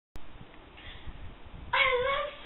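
Faint room noise, then near the end a single loud meow-like call that bends in pitch.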